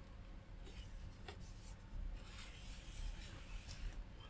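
Faint rubbing and scraping of a cardboard box lid as it is opened, with a light tap about a second in.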